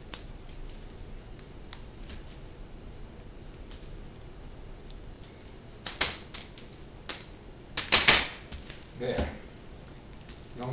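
Kitchen scissors snipping through the bones along the back of a whole fish: scattered sharp clicks, with louder clusters of snips about six and eight seconds in, the one near eight seconds loudest.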